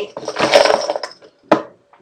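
Small lids jingling and clinking against each other inside a wooden cigar box as a hand rummages and draws one out. About one and a half seconds in, a single sharp click as the box lid is shut.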